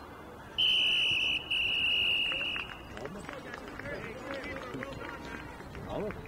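Referee's whistle blown twice, a short blast then a longer one at a steady high pitch, followed by children's voices calling out.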